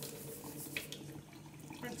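Kitchen tap running steadily into a stainless steel sink, with the light scratch of toothbrush bristles scrubbing a small rock.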